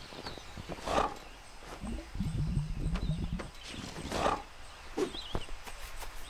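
A cartoon polar bear's voice: a low grumbling growl of about a second in the middle, between two short breathy rushes. Faint high chirps like birds come near the end.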